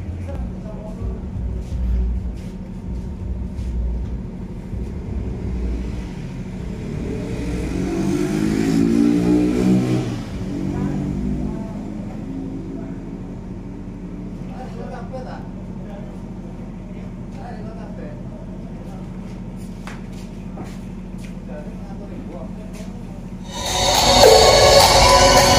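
A motor vehicle passing, its engine rising then falling in pitch, loudest about eight to ten seconds in, over a steady low hum and faint voices. Just before the end, loud music from the truck-mounted sound system cuts in suddenly.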